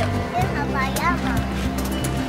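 Background music with low held chords that change about every second or two, and a high voice gliding and bending above them.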